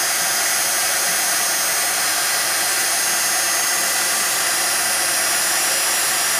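Embossing heat gun blowing steadily, a continuous rush of hot air with a faint high whine, melting embossing powder to build up a thick layer.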